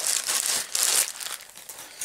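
Close crinkling and rustling handling noise right at the microphone, loudest in the first second and then dying away.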